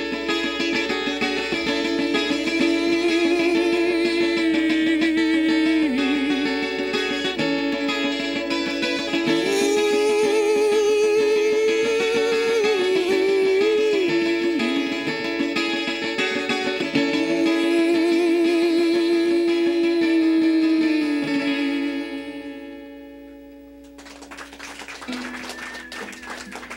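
Acoustic guitar strummed steadily, with its bass D string broken, under a man's voice holding long, wavering wordless notes. The song winds down and ends a few seconds before the end.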